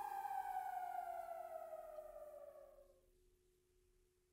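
A single sustained electronic note from the backing track, sliding steadily down in pitch and fading away about three seconds in.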